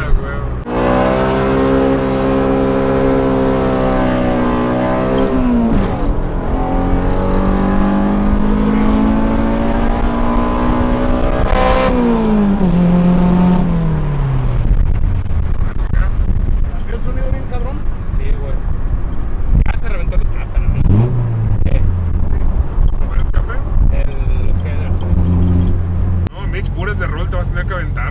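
Honda Civic EG's swapped GSR 1.8-litre DOHC VTEC four-cylinder heard from inside the cabin under a full-throttle test pull on a freshly reprogrammed ECU map. It revs hard, upshifts about five seconds in and climbs to high revs again, with a brief crack near the top. The revs then fall away as the throttle is lifted, and the engine settles to a lower drone. The crew believe this run cracked the exhaust headers.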